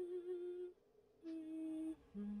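A cartoon robot's electronic voice humming two held notes, the second a little lower than the first, with a short gap between them.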